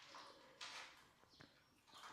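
Faint swallowing as a person gulps down a drink from a cup, head tipped back: a few soft gulps, close to silence.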